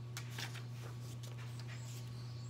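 Paper pages of a paperback picture book rustling softly as they are turned by hand, a few faint brushes in the first second, over a steady low hum.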